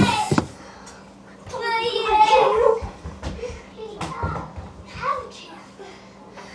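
A young child's voice: one drawn-out, high-pitched cry a second and a half in, followed by a few short vocal sounds and light knocks and bumps in a small room.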